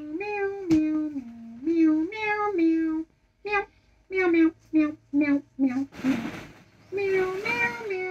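A child singing a wordless tune in held notes that step up and down, breaking into a run of short quick notes midway. A brief rush of noise comes about six seconds in.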